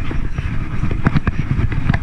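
Sled sliding fast over snow: a loud rough scraping rumble, with several sharp bumps and knocks about a second in and again near the end.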